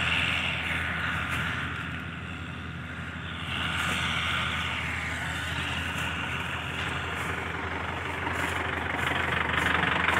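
Kubota MU4501 tractor's four-cylinder diesel engine running steadily with a low hum, growing a little louder about three and a half seconds in.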